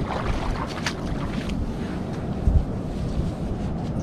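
Steady wind rumbling on the microphone, with ocean surf behind it.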